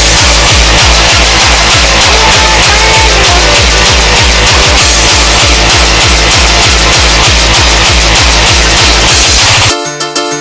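Fast electronic dance music from a live DJ mix, driven by a heavy kick drum at about four beats a second. Near the end the kick drops out for a short break of pitched notes.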